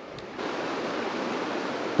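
Steady rush of flowing creek water, a little louder from about half a second in.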